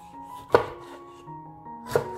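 Chef's knife chopping a tomato on a wooden cutting board: two sharp knocks of the blade striking the board, about a second and a half apart.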